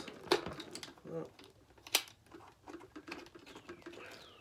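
Plastic parts of a protein skimmer being pressed and fitted together by hand: sharp clicks and small ticks, the loudest two coming just after the start and about two seconds in.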